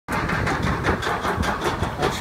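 Kraken, a floorless roller coaster, climbing its chain lift hill: a steady mechanical rumble of the lift chain with a rattle of clicks several times a second.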